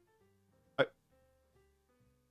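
Soft background music with held notes changing pitch, and a single brief vocal sound from a person a little under a second in.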